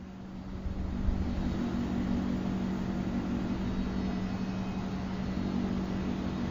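Steady background noise, a rushing sound with a low steady hum beneath it, rising a little about half a second in.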